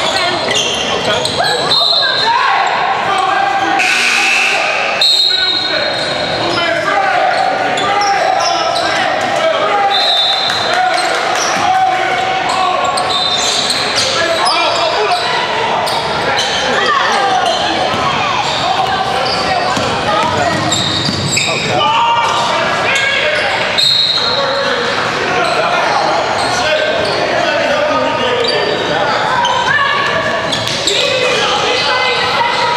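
Indoor basketball game in a large, echoing gym: players and spectators calling out and talking over one another, with a basketball bouncing on the hardwood and short high squeaks now and then.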